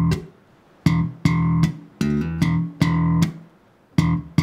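Electric bass (Enfield Lionheart) played slap style: a repeating funk riff of slapped open-E eighth notes, the first of each pair cut short, with short muted rests between. About two seconds in, a slapped D on the A string is hammered on up to E.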